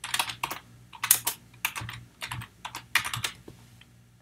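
Typing on a computer keyboard: a quick, irregular run of key clicks that thins out about three and a half seconds in.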